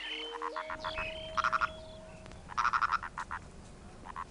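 Purple frog (Nasikabatrachus sahyadrensis) calling: two short bouts of rapid pulsed notes, the second, about a second later, longer than the first.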